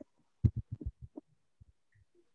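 A quick, irregular run of short low knocks, about eight over a second and a half. The first, about half a second in, is the loudest.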